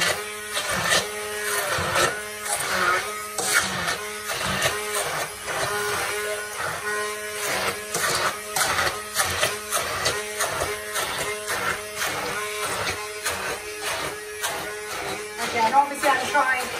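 Stick hand blender running in a stainless steel saucepan, pureeing boiled cauliflower that is still a little watery, with a steady motor hum and repeated clicks and knocks about twice a second as the blender head is worked through the mash.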